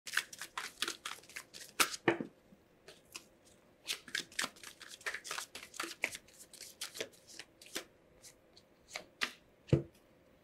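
A deck of tarot cards shuffled by hand, the cards flicking and slapping against each other in quick, irregular bursts, with a short pause about two seconds in. A single louder knock comes near the end.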